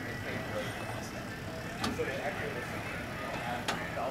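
Faint background chatter over a steady outdoor hum, with two light clicks, one a little before halfway and one near the end.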